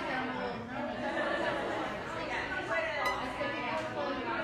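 Indistinct voices talking over each other in the background, with no guitar or singing, and a single sharp click about three seconds in.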